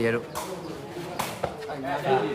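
Sharp hits of a sepak takraw ball being kicked, about three in quick succession, the loudest a little over a second in, over faint crowd voices.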